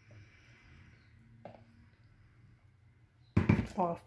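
Thick blended dessert mixture pouring almost silently from a blender jug into a glass bowl, with one faint tick about one and a half seconds in. Near the end the jug is set down on the counter with a sudden loud knock, and a voice starts.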